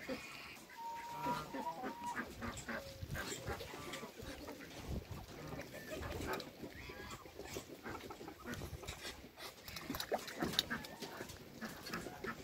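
Muscovy ducks and other backyard poultry giving short calls scattered throughout, mixed with small clicks.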